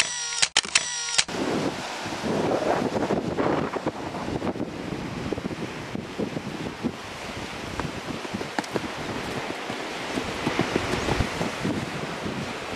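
Wind buffeting the microphone over the steady wash of the sea below the cliffs. Near the start, a short run of pulsed high tones cuts off.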